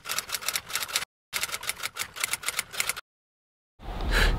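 Rapid, even clicking in two runs of about a second and a half each, with a short break between them, then silence for the last second. The clicks are typewriter-like.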